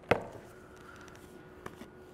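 A plastic shaker cup set down on a wooden table with a single sharp knock, followed near the end by a faint click as its cap is taken off.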